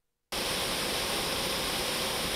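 Steady churning of surface aerators spraying water in wastewater aeration basins, starting suddenly about a third of a second in after a brief silence.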